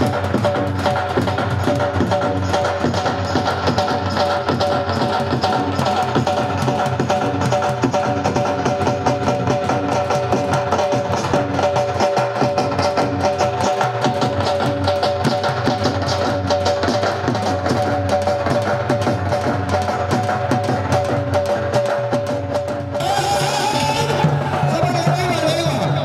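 Music of fast, dense drumming under a steady held tone, which runs on without a break until the sound changes about a second before the end.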